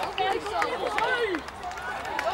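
Several voices shouting and calling over one another, players and touchline spectators at a rugby match, with short overlapping calls throughout.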